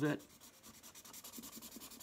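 Felt-tip marker nib rubbing on drawing paper in quick short strokes, faint and scratchy, as a background area is filled in solid black.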